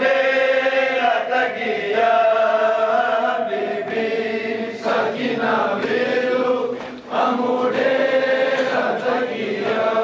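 A group of men's voices chanting a noha, a Shia mourning lament, together in long held phrases with short breaks between them.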